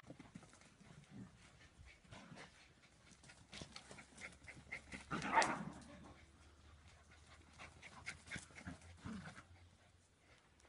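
Dogs playing and chasing on grass, faint, with scattered small scuffs and one louder short dog call about five seconds in.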